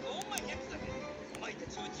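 A television soundtrack of voices over background music, heard through a TV's speaker, with a few brief sharp clicks.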